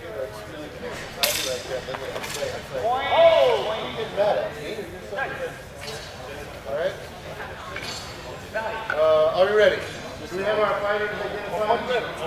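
Indistinct voices of people talking nearby, not picked up as words, with a sharp click a little over a second in and a fainter one about a second later.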